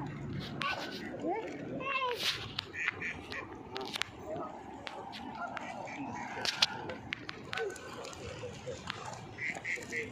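Ducks and geese calling on the water, with quacks scattered through, mixed with a young child's voice and short knocks and clicks.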